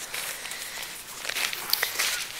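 Soft rustling of a backpack's nylon fabric being handled, with a few faint small clicks in the second half from its straps and fittings.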